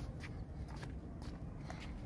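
Footsteps of people walking on brick paving, short sharp steps about twice a second, over a steady low rumble.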